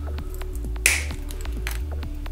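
Wooden popsicle stick snapped through with cutting pliers: one sharp crack about a second in, over background music with a steady beat.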